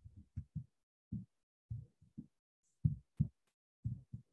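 A series of soft, muffled low thumps at an irregular pace, roughly two a second, with silence between them.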